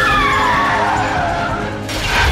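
Car tyres screeching in a skid, the squeal falling in pitch over about a second and a half before fading out.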